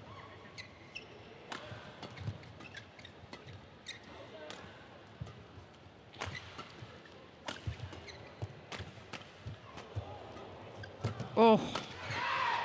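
Badminton rally: a fast exchange of sharp racket hits on a shuttlecock at irregular intervals, each a short crack in the hall. Near the end there is a brief, loud pitched squeal.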